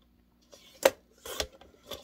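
Fiskars paper trimmer cutting a piece of cardstock: a sharp click a little under a second in, then a short scraping stroke as the blade runs through the card, and a smaller scrape just before the end.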